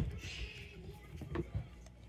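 Faint handling sounds of a cordless drill being picked up and moved over a plastic tool case: a short knock at the very start, then soft rustling and a light click about halfway through.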